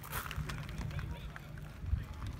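Background chatter of people talking, over a steady low rumble and a few small clicks.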